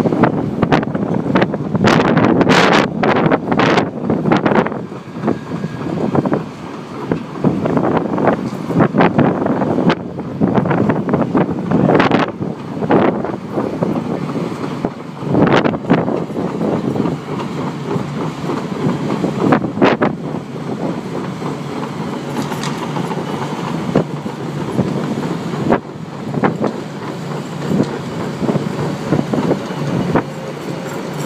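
Tracked lifeboat launch tractor running as it tows the lifeboat on its carriage, its tracks clanking and knocking repeatedly, most densely in the first few seconds. Wind buffets the microphone.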